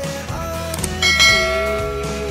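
Outro background music with two quick clicks and then a bright bell chime about a second in: the sound effect of an animated subscribe button and notification bell.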